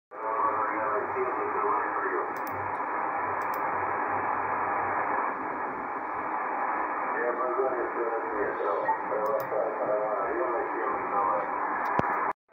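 Single-sideband voice on the amateur HF band heard through a receiver's speaker: a distant station talking, thin and muffled, over steady band hiss.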